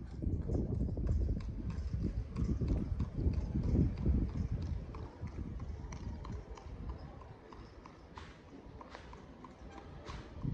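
Horse hooves clip-clopping on a paved street in a run of sharp, repeated hoof strikes. Under them is a low rumble, strongest in the first half, that fades.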